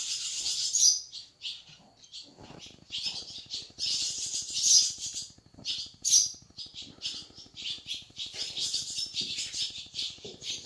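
Hands rubbing and stroking a horse's coat: a dry rustling hiss of hand on hair. It is steady for about the first second, then comes in separate short strokes.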